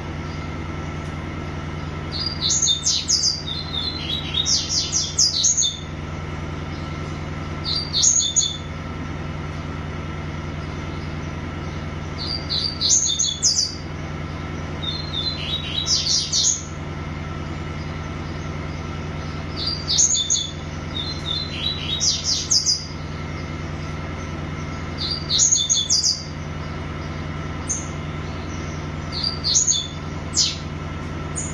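Small caged songbird singing in repeated phrases of rapid, high notes, one phrase every two to five seconds, about ten in all. A steady low hum runs underneath.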